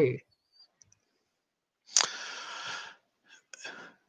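A sharp click, then about a second of breathy, whispered breath noise from a person into a microphone.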